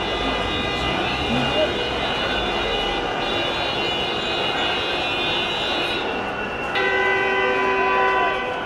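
Continuous crowd and street noise. A car horn starts near the end and holds a steady blare.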